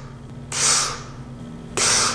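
Two short hissing puffs of breath through pursed lips, about a second apart, made while working vapor into O rings for a vape trick.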